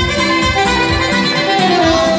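Live Romanian folk dance music: a saxophone plays the melody over electronic keyboard backing and a quick, steady beat of about three hits a second.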